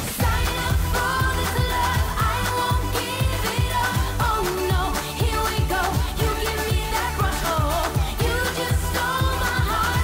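Pop song performed live: a woman's lead vocal over an electronic dance-pop backing with a steady kick-drum beat of about two a second. The full beat comes in at the very start, right after a rising synth sweep.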